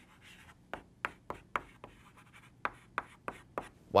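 Chalk writing on a blackboard: a rapid, irregular run of short taps and scrapes as letters and symbols are written.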